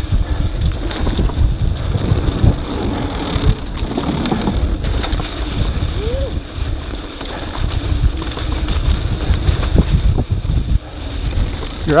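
Wind buffeting an action camera's microphone on a downhill mountain bike at speed, over the rumble of tyres on a dry dirt trail, with scattered knocks and rattles from the bike over bumps.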